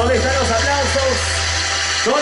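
A voice calling out over a steady low hum; the hum cuts off suddenly at the end.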